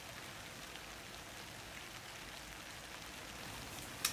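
Light rain falling steadily, heard as a faint, even hiss.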